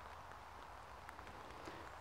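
Near silence: a faint outdoor background hiss with a few soft ticks.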